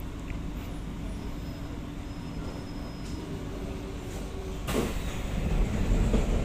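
Kawasaki–CRRC Qingdao Sifang C151A metro train heard from inside the carriage, a steady low rumble as it comes to a stop. About three-quarters of the way in, a sudden burst of noise as the saloon doors open, and the sound stays louder after it.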